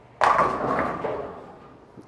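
A bowling ball hitting the pins: a sudden crash of pins scattering and rattling, dying away over about a second and a half.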